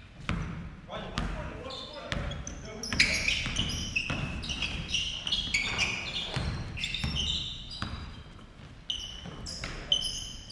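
A basketball bouncing on a hardwood gym floor during play, with many sharp bounces, sneakers squeaking on the court and players calling out.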